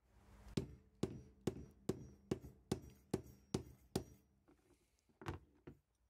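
Hammer striking a wooden block against a diecast metal toy car's roof to tap out a dent: eight evenly spaced knocks, a little over two a second, then a pause and two more.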